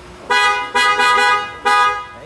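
Dual snail-type (spiral) electric car horn sounding three blasts, the middle one the longest, with a steady, bright pitch.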